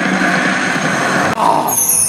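Dancing Drums video slot machine playing a loud, sustained electronic sound effect, a hissing rush over a steady low hum, broken briefly about one and a half seconds in and followed by high chiming tones near the end.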